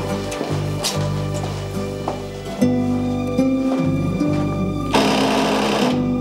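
Instrumental background music with held, low notes that change pitch every second or so. A short burst of noise comes about five seconds in.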